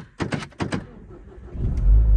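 Renault Grand Scénic petrol engine being started: a short run of starter cranking, then the engine catches about a second and a half in and runs, catching nicely on the first try.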